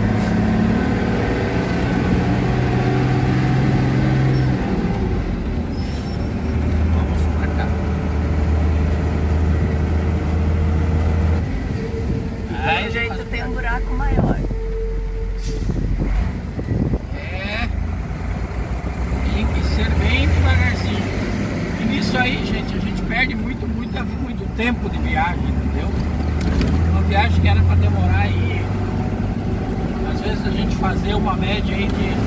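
A Mercedes-Benz 1218 truck's diesel engine running on the road, heard from inside the cab with tyre and road noise. Its low tone steps up and down in pitch several times as the engine speed changes.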